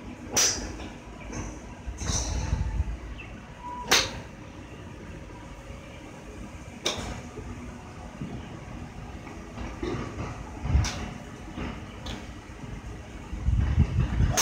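Golf clubs striking balls at a driving range: about five sharp cracks a few seconds apart. There are low rumbles in between, and a louder one near the end as the phone is handled.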